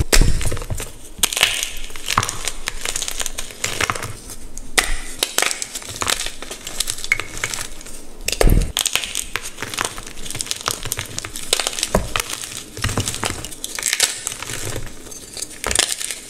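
A block of dyed gym chalk crushed and crumbled between the fingers: dense, irregular crunching and crackling. A few louder thuds come as larger chunks break apart.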